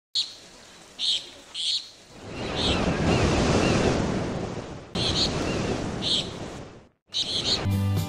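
Ocean surf washing in two long swells, with birds chirping now and then. The sound drops out briefly about seven seconds in, and music starts just before the end.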